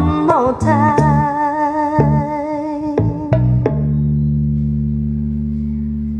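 The closing bars of a pop love song played through Onkyo D-202A LTD bookshelf speakers: a held sung note with vibrato over drum hits, then, a little past halfway, one final sustained chord that slowly fades.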